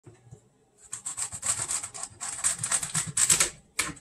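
Kitchen knife sawing through the root end of a celery bunch on a wooden cutting board: a rapid run of crisp crunching strokes, several a second, for a couple of seconds. A single sharp knock comes near the end, as the cut finishes.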